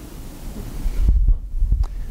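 Low, dull thumps and rumble with a few faint clicks, loudest about a second in: movement noise from a clip-on microphone being jostled as the wearer shifts.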